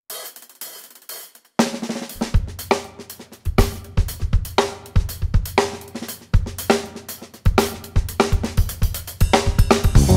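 Drum kit playing a steady groove. Hi-hat and cymbal play alone at first. Kick drum and snare come in about a second and a half in, at roughly two strokes a second.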